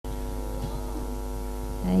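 Steady electrical mains hum, a constant low buzz with overtones, with a woman's voice coming in just at the end.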